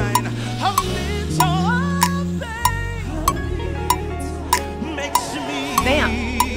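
Live gospel band music: singing voices over sustained bass notes, with a sharp percussive hit about every 0.6 seconds keeping the beat.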